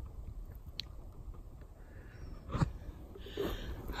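A quiet pause with a faint low rumble of phone handling, a faint click about a second in and a short sharp sound past the middle, then a breath drawn in near the end.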